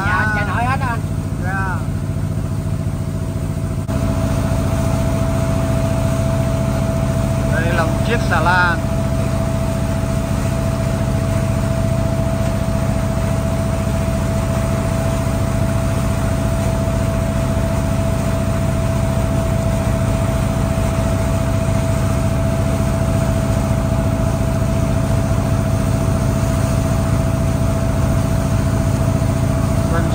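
Small wooden river boat's engine running steadily under way, its note stepping up and a thin steady whine joining in about four seconds in.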